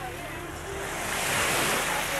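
Small lake waves washing onto a sandy shore, with wind buffeting the microphone; the wash swells about a second and a half in.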